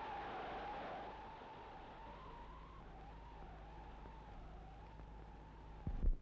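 A faint, single high tone that slowly wavers up and down over the low hum and hiss of an old film soundtrack, with a short low thump near the end.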